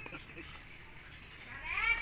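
A cat meowing: a short call at the start and a longer, louder call near the end, rising then falling in pitch.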